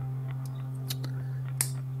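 Small plastic clicks as a plastic packing insert is worked off a GoPro camera mount by hand: three short ticks about half a second, one second and 1.6 seconds in, over a steady low hum.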